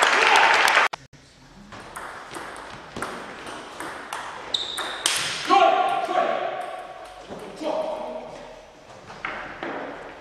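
Loud shout of celebration from a table tennis player that cuts off about a second in, followed by the sharp clicks of a celloid/plastic table tennis ball striking bats and table, about two a second, with more shouts from the players during and between points.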